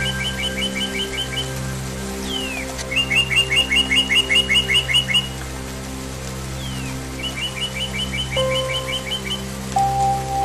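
A songbird singing the same short phrase over soft ambient music of held tones: a downward slur, then a quick run of about a dozen even chirps. It sings the phrase twice, about two and a half and seven seconds in, with the tail of another just at the start.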